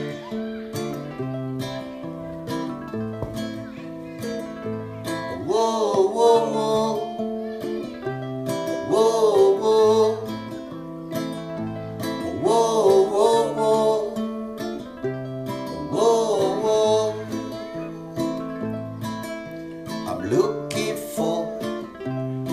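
Acoustic guitar strumming chords over a repeating bass-note pattern, in an instrumental break of a song. About every three to four seconds a wordless sung phrase glides up and down in pitch over it.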